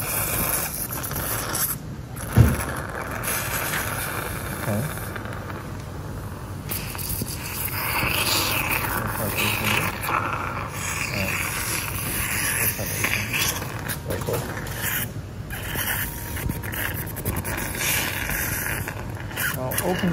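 Steady operating-theatre background noise with faint voices, and a single sharp click about two and a half seconds in.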